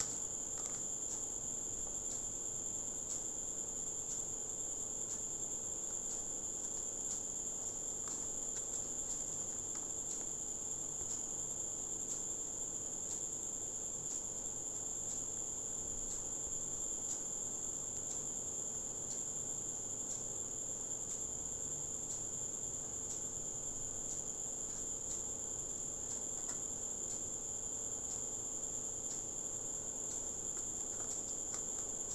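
A steady high-pitched whine runs without a break, with faint scattered clicks of a plastic CD jewel case being handled.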